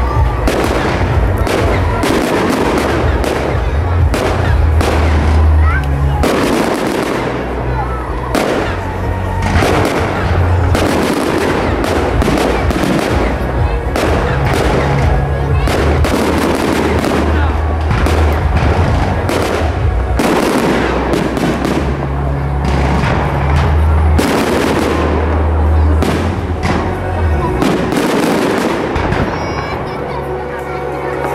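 Fireworks display: a dense, continuous run of aerial shell bangs and crackles, over music with a heavy bass line.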